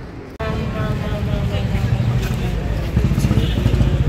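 A steady low rumble with voices over it, starting abruptly about half a second in.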